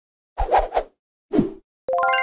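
Animated logo sound effects: three quick pops in a row as puzzle pieces snap together, one more pop about a second later, then a bright chime of several ringing tones that starts just before the end.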